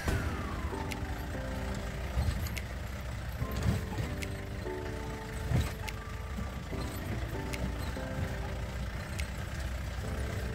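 Background music with a calm, stepwise melody over the low, steady rumble of an off-road jeep driving a rough dirt track. A couple of knocks from the jolting vehicle come about four and five and a half seconds in.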